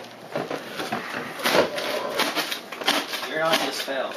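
Indistinct talk from several people in a small room, mixed with small knocks and clatter.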